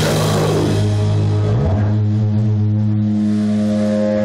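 Live metal band ending a song: the drums and cymbals stop about a second in, leaving electric guitar and bass holding one loud ringing chord.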